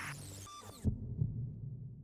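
Heartbeat sound effect in a channel logo sting: two low thumps close together, like a lub-dub, about a second in, over a low hum that fades, just after a whoosh cuts off.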